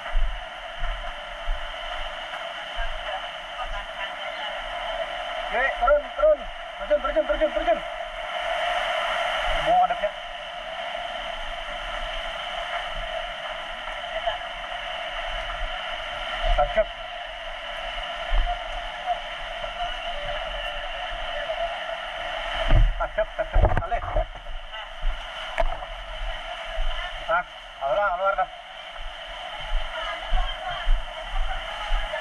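Muffled, indistinct voices over a steady hiss, with low knocks and bumps throughout. A brief louder stretch of voices and knocks comes a little after the middle.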